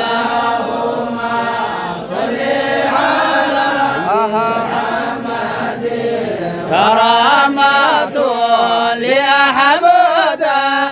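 A small group chanting an Arabic devotional song of blessings on the Prophet Muhammad (salawat) together, in long, drawn-out sung phrases; the chant swells louder about seven seconds in.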